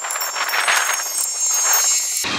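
Plastic rustling and scraping as a white plastic security camera is handled, set onto its mount and twisted down on the mounting screw, with small ticks of contact. A faint steady high whine sits under it.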